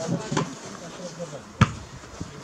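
A soccer ball kicked: one sharp thud about one and a half seconds in, after brief shouts from the players.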